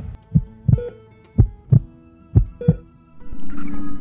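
Heartbeat sound effect: three lub-dub double thumps, about a second apart, over a faint music bed. Near the end a louder musical swell begins.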